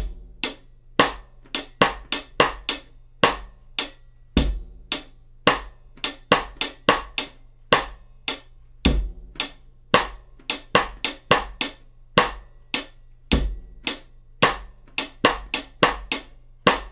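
Drum kit playing a slow rock groove: steady closed hi-hat strokes on a 12-inch UFIP hi-hat, bass drum, and a snare drum hitting beats 2 and 4 plus syncopated notes on the fourth sixteenth of beat 2 and the second sixteenth of beat 3. The one-bar pattern repeats, with the strongest low hit about every four and a half seconds.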